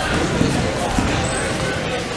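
A nine-pin bowling ball rolling down the lane with a low rumble, with a thump about a second in.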